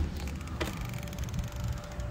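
A door opening with a sharp click about half a second in, followed by outdoor background: a steady low rumble and a fast, even, high-pitched ticking.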